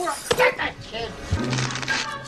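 Short vocal cries from a cartoon voice with a few sharp knocks, over background music with a held low note in the second half.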